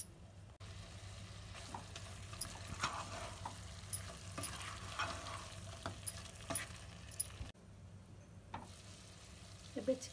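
A spatula stirring thick chicken masala in a nonstick pot on the heat, with irregular taps and scrapes against the pan over a soft frying sizzle and a steady low hum. The stirring goes quiet for the last couple of seconds.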